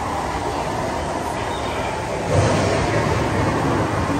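Steady rushing, rumbling noise of a boat dark ride's cavern ambience. It grows louder, with more low rumble, a little over halfway through.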